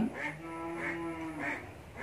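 A cow mooing: one faint, steady call lasting a little over a second, dipping slightly in pitch as it ends.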